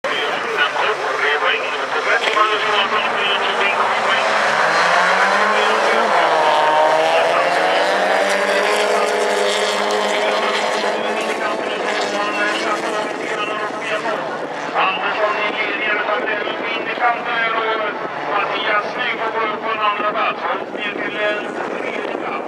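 A pack of folkrace cars' engines revving hard as the heat gets under way. The engine notes climb and fall through gear changes during the first ten seconds, then carry on in an uneven mix as the cars race on.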